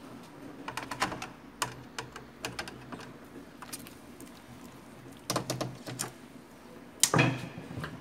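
Small irregular clicks and taps of a screwdriver working a screw out of an inkjet printer's plastic frame, with a louder clatter of handling near the end.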